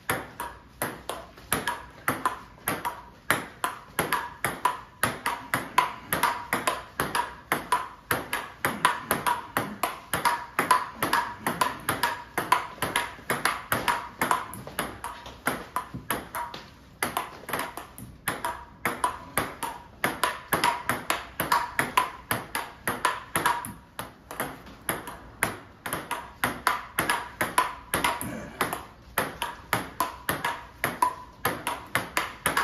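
Table tennis rally: a plastic ping-pong ball clicking off rubber-faced bats and the table top in quick, steady alternation, several hits a second. There is a brief break about 17 seconds in.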